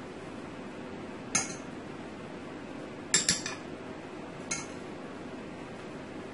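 A metal spoon and a mesh kitchen strainer clinking as they are handled and set down: one sharp clink, then a quick double clink a couple of seconds later, then a fainter one.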